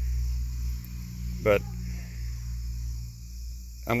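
Insects chirring steadily in the background over a low, steady rumble, with one short spoken word about halfway through.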